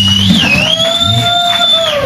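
Electric slide guitar sliding up into a high final note and holding it with a slight waver. The band's low notes stop about a third of a second in, leaving the guitar note ringing alone.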